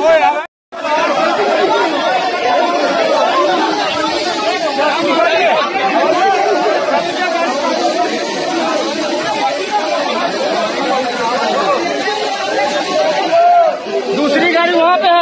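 Many people talking at once in dense, overlapping chatter, with no single voice standing out. The sound cuts out briefly about half a second in.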